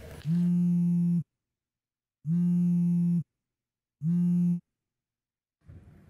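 A phone ringing: three steady buzzy tones, each about a second long with a second's gap between, the third cut short as the call is answered.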